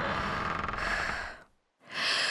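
A person breathing heavily and fearfully close to the microphone: one long breath lasting about a second and a half, then a short pause before the next breath begins.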